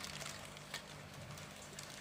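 Quiet room tone with a few faint clicks and rustles from handling the motor's lead wires and the plastic sheet under it.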